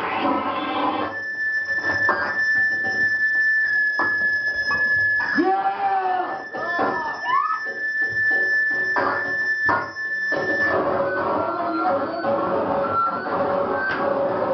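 Live harsh-noise electronics. A dense wall of noise gives way, about a second in, to a steady high whistling tone with stuttering cut-outs and swooping pitch glides. Near the end the full noise wall returns.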